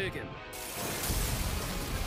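Sound effects from the anime episode's soundtrack: a dense, noisy crackling texture, with a low rumble coming in about a second in.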